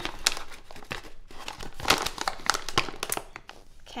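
Irregular crinkling and rustling of flour packaging as a quarter cup of oat flour is scooped out and added to the mixing bowl.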